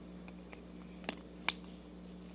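Paper being folded by hand: two short, sharp clicks about half a second apart, the second louder, over a faint steady hum.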